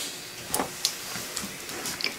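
A pause between speech: room tone with a steady faint hiss and a few faint clicks.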